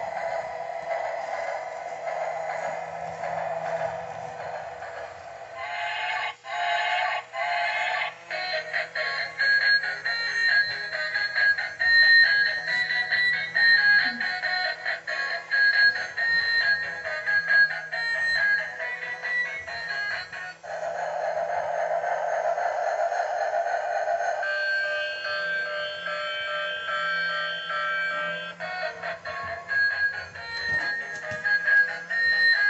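Electronic melody played through the speaker of a battery-powered musical bump-and-go toy train as it runs. The tune changes several times.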